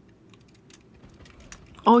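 Computer keyboard being used to play a game: faint, quick, irregular key clicks.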